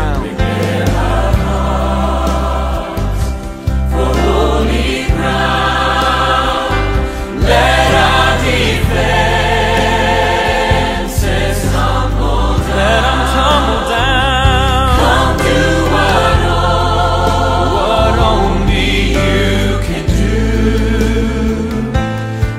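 A choir sings a contemporary worship song over instrumental accompaniment with sustained bass notes.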